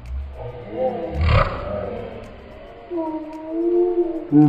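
Excited wordless voices: laughing and whooping, with a short noisy outburst about a second in and a long held cry near the end.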